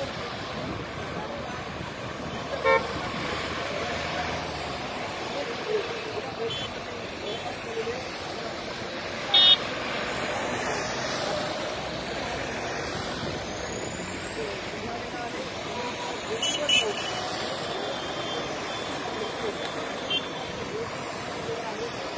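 Road traffic from a passing convoy of cars, trucks and motorcycles, a steady drone of engines and tyres. Vehicle horns toot briefly three times, about three, nine and seventeen seconds in; the middle one is the loudest.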